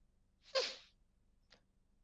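A single brief, breathy burst from a person's voice, picked up by a headset microphone. A faint click follows about a second later.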